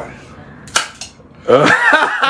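A beer bottle's crown cap prised off with an opener: one sharp pop about three-quarters of a second in. A man's voice follows near the end.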